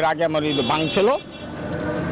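A man speaks for about a second. Then road traffic takes over, with a steady vehicle engine tone.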